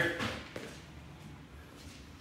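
Quiet room tone with no distinct event, after the tail of a man's spoken word at the very start.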